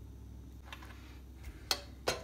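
Quiet room tone with a steady low hum, a faint click just under a second in and a sharper single click near the end.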